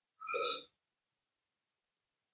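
A brief throaty vocal sound from a person over the call audio, under half a second long, near the start.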